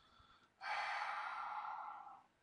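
A man's long, breathy exhale, a sigh, starting about half a second in and lasting about a second and a half.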